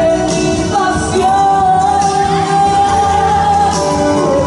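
A woman singing into a microphone over accompanying music, amplified through PA speakers. She holds one long note through the middle of the phrase.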